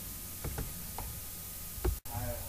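Steady background hiss with four short, faint clicks: two about half a second in, one at about a second, and one with a low thump near the end.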